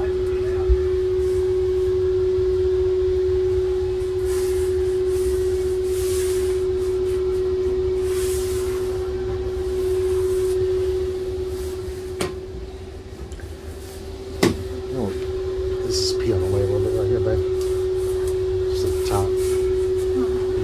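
A steady hum at one pitch over a low rumble, with a few sharp knocks: one near the start and two more about twelve and fourteen and a half seconds in.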